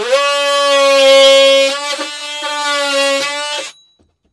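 DeWalt 20V cordless oscillating multi-tool plunge-cutting into a wooden cabinet panel: a loud, steady high buzz that winds up at the start, dips briefly a few times around the middle as the blade cuts, and stops shortly before the end.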